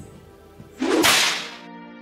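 A swoosh transition sound effect about a second in, rising sharply and fading within about half a second, then soft sustained background music chords setting in.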